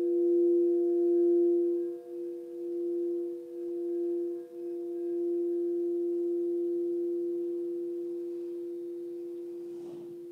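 Frosted quartz crystal singing bowls played with a mallet: one steady, pure ringing tone with fainter higher tones above it. The tone dips and swells a few times in the first half, then holds and slowly fades near the end.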